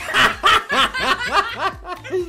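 A man and a woman laughing hard in quick repeated bursts, loudest in the first second.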